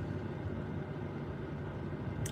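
Steady low hum of a car's idling engine, heard from inside the cabin.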